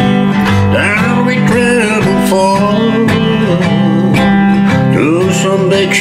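A man singing a slow country song, accompanying himself on a strummed acoustic guitar.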